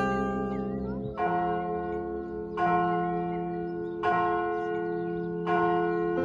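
The church's three tuned bells (F, A-flat and C) struck one at a time: four strokes about a second and a half apart, each ringing on with many overtones as it fades.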